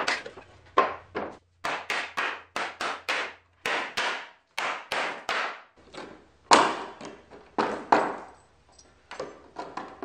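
Hammer blows on pallet boards as the pallets are broken apart and nails knocked out: a series of sharp wooden knocks, roughly two a second, with a few short pauses.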